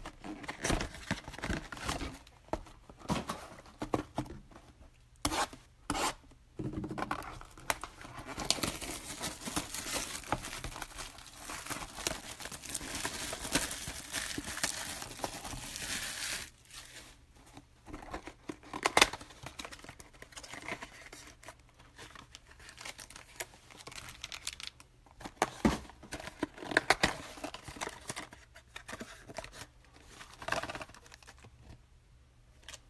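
Plastic wrapping and cardboard of a Topps Finest trading card box being torn open and handled, with scattered crackles and clicks. A long spell of continuous tearing and crinkling runs through the middle, about eight seconds long.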